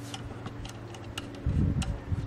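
A few light, irregular clicks as wires and screw terminals on a small DC circuit breaker are worked by hand and screwdriver, over a faint steady hum, with a low rumble coming in about one and a half seconds in.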